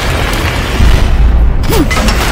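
Sound-designed explosion: a deep, continuous booming rumble with crackling debris over it.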